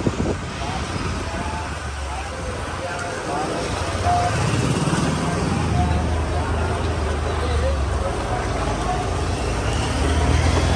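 Street ambience: faint background voices and the low hum of a motor vehicle engine, which grows louder about three and a half seconds in.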